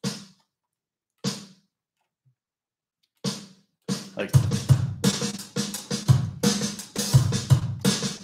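Programmed drum-kit pattern played back from music software: a couple of single drum hits, then from about three seconds in a sixteenth-note groove with kick, snare and ghosted snare notes, really loud.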